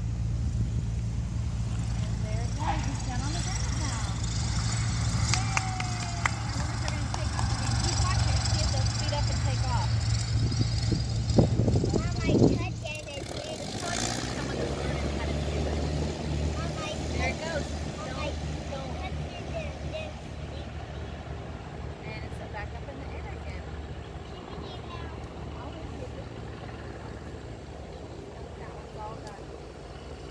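Light propeller airplane's engine passing close by: a steady note that grows louder to a peak about twelve seconds in, then drops in pitch as the plane goes past and fades slowly as it flies off into the distance.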